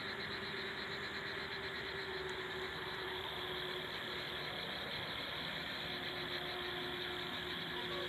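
Steady outdoor background noise, an even hiss with a faint hum and no distinct events.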